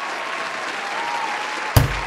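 Applause sound effect, an even clapping hiss with a few faint whistle-like tones running through it, broken by one heavy thump near the end.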